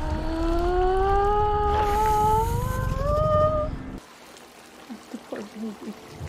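Horror-film soundtrack: a low rumble under a single drawn-out tone that slowly rises in pitch, both cutting off about four seconds in.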